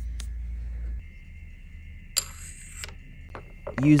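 A steady low hum for the first second, then a short metallic scrape about two seconds in as a steel 45-degree angle block is set into a milling vise.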